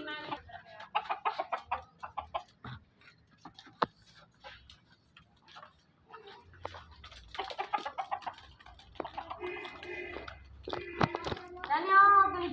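Domestic chickens clucking in bursts during the first two seconds and again through the second half, loudest near the end, with a quieter stretch between.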